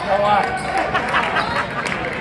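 A basketball dribbled on a hardwood gym floor, a few sharp bounces, over the voices of people in the gym.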